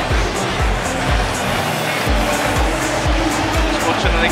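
Backing music with a steady thumping beat, about two beats a second, over steady stadium crowd noise.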